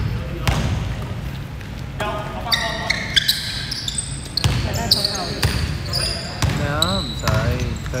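Basketball bounced on a hardwood gym floor about once a second, with sneakers squeaking on the court as players move.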